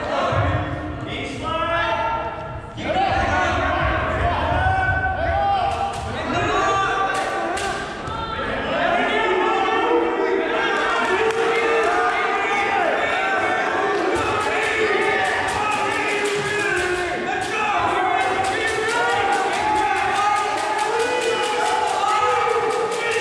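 Several voices shouting over one another in an echoing gymnasium, with occasional thuds and knocks.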